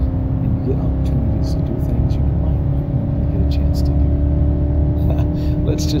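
BMW E39 wagon's swapped-in 4.6-litre V8, breathing through headers and an open straight pipe, pulling hard at around 4,000 rpm as the car accelerates at highway speed, heard from inside the cabin. The engine note climbs slowly as the revs rise.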